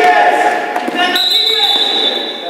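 Basketball being dribbled on a gym floor amid voices calling out, then about a second in a long, high, steady referee's whistle that stops play.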